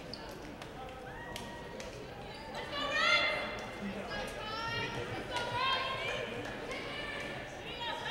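Women volleyball players shouting calls and cheers in a gymnasium, a run of high, rising shouts starting about two and a half seconds in. A few sharp knocks of a ball bouncing on the hardwood floor come in between.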